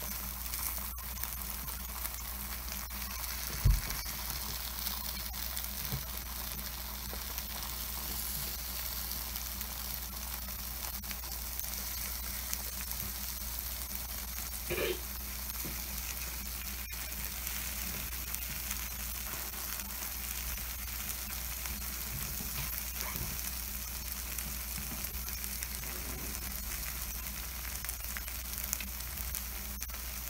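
Takoyaki batter and shredded cabbage sizzling steadily in the wells of a takoyaki pan, with one dull thump about four seconds in.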